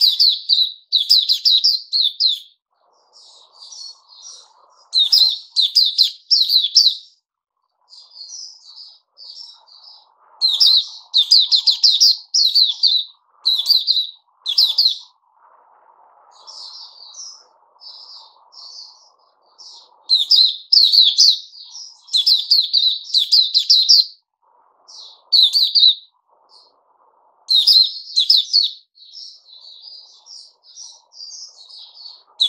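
A caged white-eye singing in bursts of rapid, high twittering phrases, each one to two and a half seconds long, broken by short pauses.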